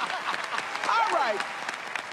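Applause from a group of people clapping, with a voice calling out about a second in.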